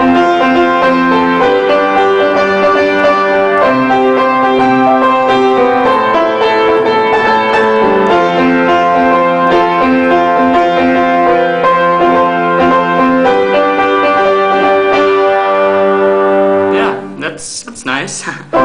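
Solo piano playing a slow melody over held chords. The playing stops shortly before the end, followed by a few short knocks.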